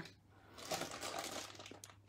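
Crinkling and rustling of a clear plastic bag and small supplies being handled in a drawer, lasting about a second and a half.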